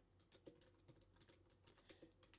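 Faint typing on a computer keyboard: a run of light, irregular keystrokes.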